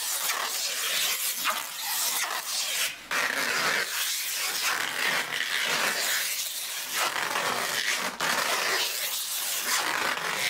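Clear adhesive tape being pulled off the roll and wound tight around plastic bottles on a wheel rim: a continuous rasping peel with brief breaks.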